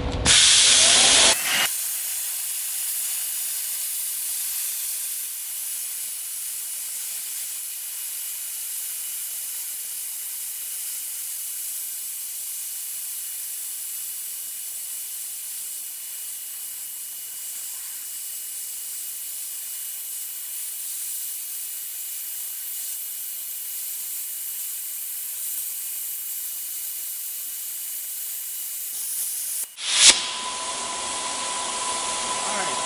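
Thermal Dynamics Cutmaster 60i X air plasma cutter cutting: a loud rush in the first second or so as the arc starts, then a steady hiss with a thin high tone that cuts off just before the end. It is a slow severance cut through one-inch and half-inch plate stacked with an air gap, at the machine's rated 1½-inch limit.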